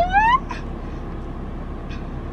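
A woman's drawn-out, sing-song vocal sound rises in pitch and stops about half a second in. After it comes a steady low hum inside a car cabin.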